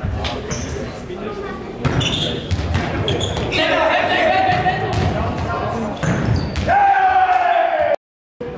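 A Faustball rally: the ball is struck and bounces on the hard sports-hall floor, making sharp echoing smacks. Players shout long calls across the hall, one near the middle and one near the end.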